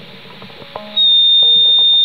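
Electric guitar feedback through a small valve amp, with the overdrive pedal's gain turned fully up: about a second in, a single steady high-pitched squeal starts suddenly and holds. Faint guitar notes sound before it.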